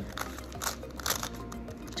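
Magnetic GAN Skewb M puzzle being turned by hand: a run of about five sharp plastic clicks as its layers snap into place, with music playing underneath.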